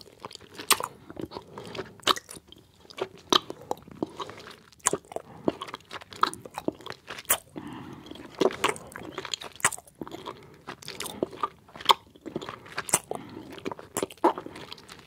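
Close-miked mouth sounds of chewing soft gummy candies: wet, sticky smacking and squishing with sharp lip and tongue clicks, a few a second in an uneven rhythm.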